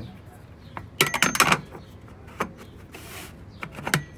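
A metal filter wrench clattering against the fuel-water separator's collar: a quick run of sharp metallic clanks about a second in, followed by a couple of single clicks.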